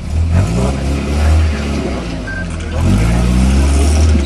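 Engine of a modified off-road trial 4x4 revved hard under load as the vehicle climbs out of a steep dirt hole. The pitch rises twice: once just after the start and again about three seconds in.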